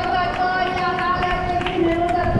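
Many runners' footsteps, a quick patter of short ticks several times a second, with crowd voices around them. A steady held pitched tone runs underneath.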